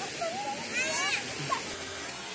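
River water lapping and splashing around swimmers, a steady wash of water noise. A short, high rising voice call cuts through it about a second in.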